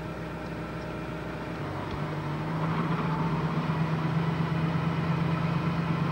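Range Rover engine heard from inside the cabin while driving through snow; about a second and a half in its note steps up and grows steadily louder as it accelerates.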